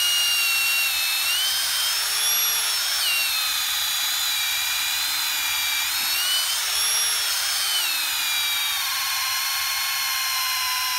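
Cordless drill boring a hole down through hard-packed ground and layered sedimentary rock, its battery starting to die. The motor runs without a break, its pitch dipping and recovering again and again as the bit works through each rock layer.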